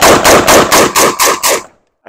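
AR-15-style rifle firing a rapid string of about ten shots, roughly six a second, that stops near the end.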